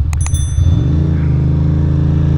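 Ducati Monster 620's air-cooled L-twin engine running on the road, its pitch rising about a second in as the bike accelerates through the intersection. Just after the start come a couple of sharp clicks and a bright ringing ding that fades within a second.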